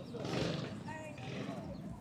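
Background voices of several people talking, with a brief noisy rustle about half a second in.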